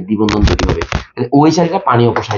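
A man's voice talking quickly, with a run of sharp clicks in the first second.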